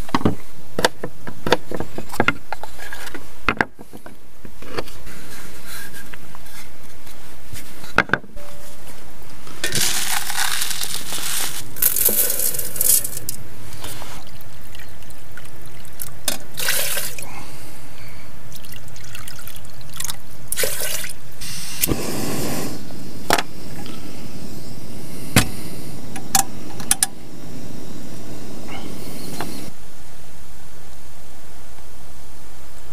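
Liquid poured from a metal flask into a small cooking pot, in a few separate pours, with scattered clicks and knocks of handling on a wooden table in the first several seconds.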